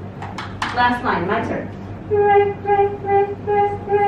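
A short stretch of speech, then a singing voice repeating one note about six times in short separate syllables, in the manner of solfège drill on the same pitch.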